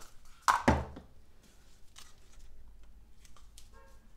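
Paint cups and plastic bottles being handled on a worktable: two sharp knocks about half a second in, then scattered small clicks and taps.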